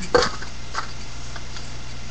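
A single sharp knock of an object being set down on a hard surface, followed by a couple of faint ticks, over a steady hum and hiss.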